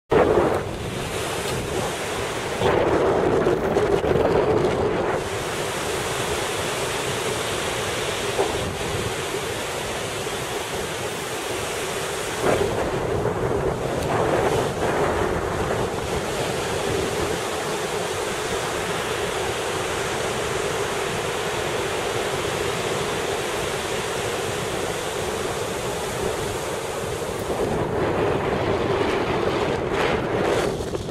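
Wind rushing over the microphone of a camera flying under a paraglider: a steady noisy rush that swells louder for a couple of seconds near the start and again near the end.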